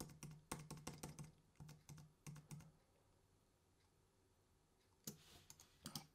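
Faint computer keyboard typing: a quick run of key clicks through the first two and a half seconds or so, then near silence, with a soft noise just before the end.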